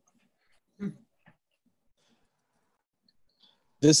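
Near silence, broken by a short murmured 'mm' about a second in and a faint click just after; a person starts speaking near the end.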